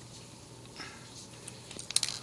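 Pliers gripping a small ceramic capacitor and pulling it out of a solderless breadboard: faint scraping and small ticks, then a sharp click near the end as it comes free.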